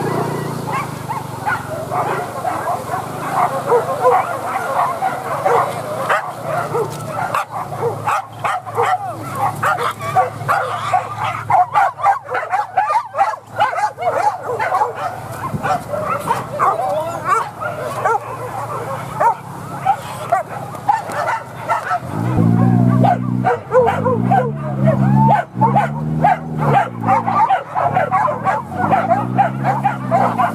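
A pack of leashed boar-hunting dogs yipping and whining continuously in quick, high yelps. About three quarters of the way through, lower drawn-out calls of about a second each start, repeating several times.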